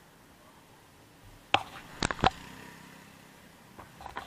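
Three sharp knocks from a hand handling the camera: one about a second and a half in, then two close together half a second later, with a faint low hum after them.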